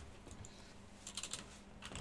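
A few faint clicks on a computer keyboard, in a quick cluster about a second in and once more near the end.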